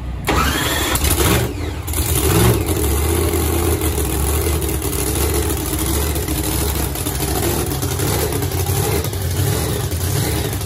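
Race V8 in a no-prep Chevy Nova drag car firing up: it catches suddenly with a rising rev, revs up again about two seconds in, then settles into a steady, loud idle.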